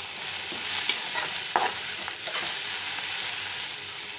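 Chopped onions sizzling in oil in a steel kadhai while being stirred, with a couple of short scrapes of the spoon against the pan about a second and a second and a half in.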